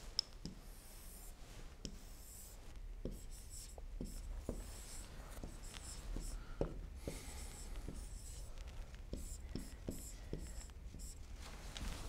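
Pen writing on an interactive whiteboard screen: a string of faint short strokes and taps as numbers and units are written into a table.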